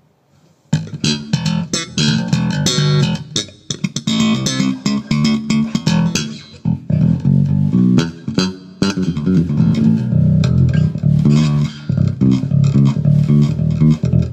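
Electric bass guitar played through a brand-new Gallien-Krueger 410 bass cabinet with four 10-inch speakers, which is being broken in at a moderate volume. The line of plucked notes starts about a second in and runs on without a break.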